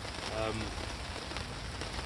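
Steady rain falling, with drops pattering on a fishing umbrella's canopy.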